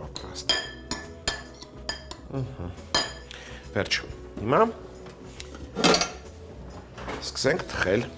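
A metal spoon clinking against a glass mixing bowl during stirring, with several short ringing clinks in the first three seconds. A louder knock follows about six seconds in.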